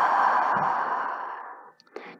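A woman breathing out one long breath that fades away over about a second and a half.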